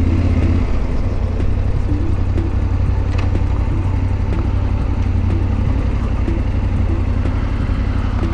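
Yamaha Ténéré 700's parallel-twin engine running steadily at low revs as the motorcycle rolls slowly; the low, even rumble does not rise or fall.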